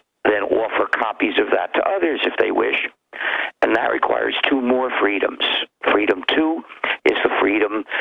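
Speech only: a man talking steadily over a telephone line, with the thin, narrow sound of a call-in radio broadcast.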